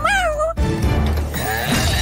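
A cartoon cat's voice meowing in a high gliding pitch over background music, breaking off about half a second in; the music with a steady bass line carries on.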